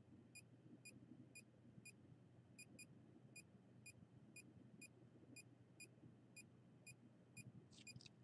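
Faint short electronic beeps from a handheld RF/EMF meter, about two a second and evenly spaced, over a faint low hum.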